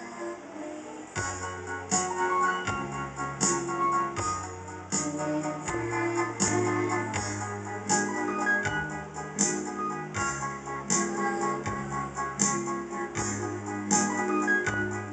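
Instrumental karaoke backing music played from a TV: keyboard and organ-like chords over a bass line that steps to a new note about every second, with a steady beat of regular cymbal-like hits.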